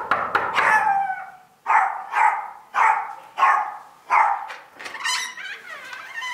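A knock at a door, then a dog barking from behind it, a string of short barks about every half second that thins out about five seconds in.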